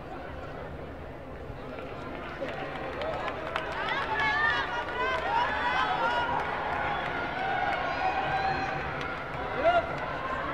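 A hubbub of many voices in a large sports hall. From about three seconds in it grows louder, with raised voices calling out as the bout ends.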